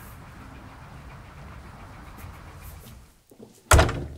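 Steady outdoor background noise, then near the end a single loud thud of a door shutting.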